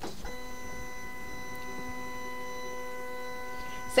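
Silhouette Cameo Pro cutting machine's carriage stepper motor running with a steady, even-pitched whine as the blade housing travels across the 24-inch machine on power-up, resetting to its home position. The whine starts about a quarter second in.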